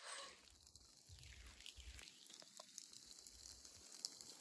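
Near silence: only faint outdoor background noise.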